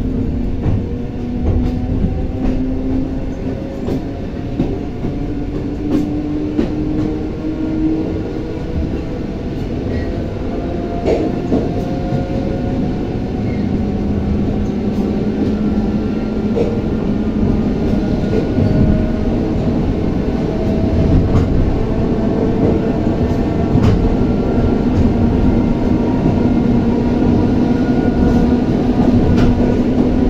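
Inside an ER2R electric multiple unit under way: a steady rumble of wheels on rail with scattered clicks over the joints. Over it runs a motor whine that slowly rises in pitch as the train gathers speed.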